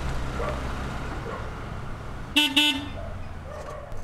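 A car horn giving two short toots in quick succession, about a quarter second apart, over a steady low hum.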